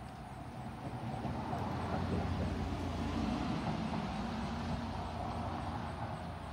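A motor vehicle passing by: a low engine-and-road noise grows louder about a second in, holds, and eases off near the end.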